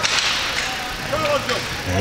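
Hockey arena sound: a skate blade scraping across the ice in a short hiss that fades during the first half second, over a faint murmur of distant voices.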